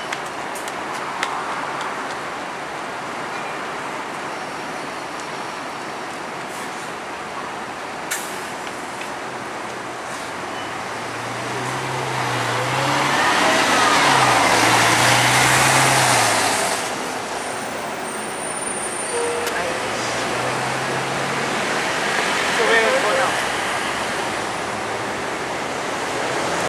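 Mercedes-Benz Citaro city bus pulling away and driving past. It grows louder to a peak about halfway through, where its low engine note is loudest and shifts in pitch, then fades as it drives off. Bus-station background noise and voices are heard throughout.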